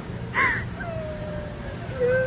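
A person's short, high-pitched shriek about half a second in, then a drawn-out vocal sound that slowly falls in pitch and lasts about a second, over the steady hum of a store.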